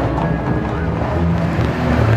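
A vehicle engine running steadily, with people's voices around it.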